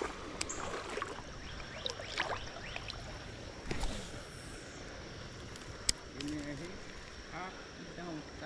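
Spinning rod and reel being cast and retrieved: a brief swish of line about four seconds in, a single sharp click near six seconds as the bail snaps shut, then a faint steady whine of the reel being wound. Faint voices murmur in the background.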